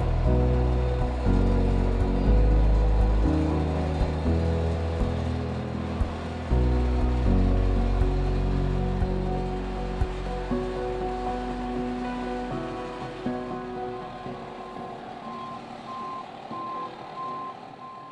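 Background music fading out, with a vehicle backup alarm beeping at an even rate in the last few seconds, typical of an aircraft tow tug reversing.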